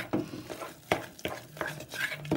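A hand mixing thick health-mix flour batter in a steel bowl: irregular wet stirring strokes, with a few sharp clicks against the bowl.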